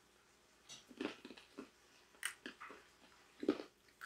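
Faint, irregular crunches of several people chewing seasoned roasted almonds.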